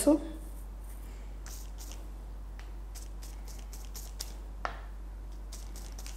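Faint rustling and light taps of a fringed EVA-foam flower centre being dabbed on a sheet of paper to blot off excess white glue, with one sharper tick about two-thirds of the way through.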